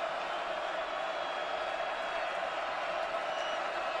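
Football stadium crowd, a steady wash of many voices with no single sound standing out.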